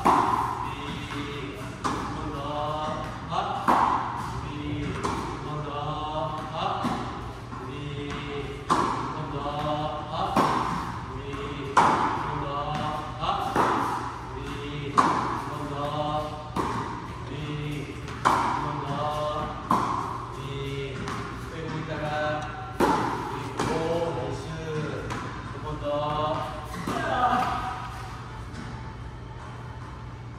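Tennis balls struck by a racket in an indoor court hall, a sharp hit roughly every second and a half during a fed-ball drill.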